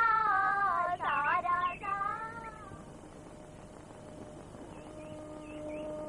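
A woman's high singing voice in the background music, holding long notes with sliding ornaments. It fades out about three seconds in, leaving a faint steady held tone.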